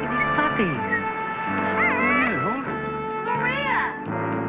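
Puppy whining in three short cries that slide up and down in pitch, over a sustained orchestral film score.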